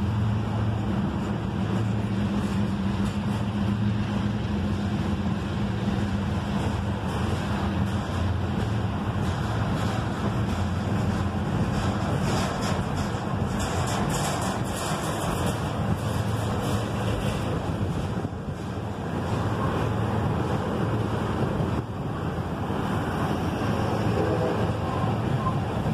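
Freight train cars rolling past, a steady rumble of steel wheels on the rails.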